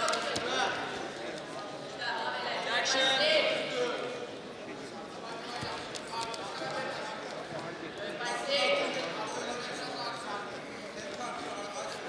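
Men's voices shouting and calling out around a wrestling bout, loudest about three seconds in and again near nine seconds, with a few dull thumps of the wrestlers on the mat.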